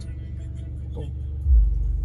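Volkswagen Polo's engine idling, heard inside the cabin as a steady low hum, with one deep thump about one and a half seconds in.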